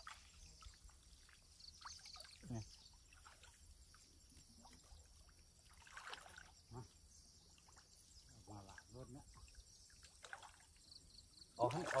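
Water trickling and dripping from a wet cast net as it is hauled up out of a shallow pond, with scattered small splashes.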